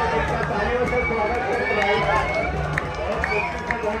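Indistinct voices of a crowd of spectators talking and calling out together over a steady low hum.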